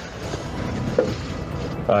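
Steady rushing background noise on a caller's voice recording during a pause in his speech, with a short click about a second in; his voice comes back right at the end.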